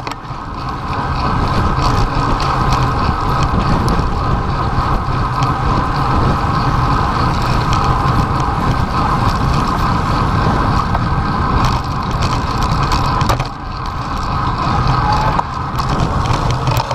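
Continuous wind and road noise from a camera on a bicycle riding fast along a city street, with a brief lull about three-quarters of the way through.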